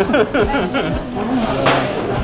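Men laughing in short falling bursts, with a brief breathy rush of noise about a second and a half in.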